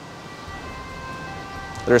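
Faint ambulance siren, a set of held tones that drops to a lower pitch just past halfway.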